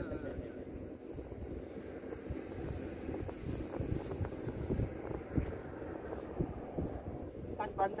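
Wind buffeting the microphone: a steady low rumble with irregular gusts.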